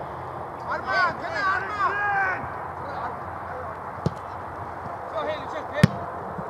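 Distant shouts of football players calling to each other on an open pitch, over steady outdoor noise, with two sharp thuds, the second and louder one near the end.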